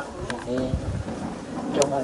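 A Buddhist monk reciting a Thai prayer into a handheld microphone, calling on the guardian deities of the place to rejoice in the merit. Two sharp clicks sound, one about a third of a second in and one near the end.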